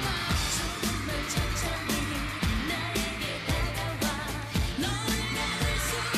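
K-pop girl-group dance song: female voices singing into microphones over a steady electronic dance beat of about two drum hits a second.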